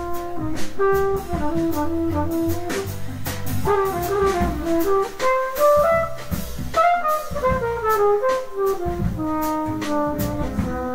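Live jazz quartet: a trumpet plays a solo of quick running phrases that climb and fall, over drum kit with cymbal strokes and a walking bass line.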